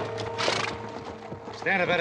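Music fading out under the sound of horses, with a short breathy burst about half a second in; a man starts speaking near the end.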